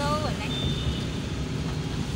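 Steady low rumble of a moving car's engine and tyres heard inside the cabin, with a voice briefly at the start and a faint, thin high tone lasting about a second in the middle.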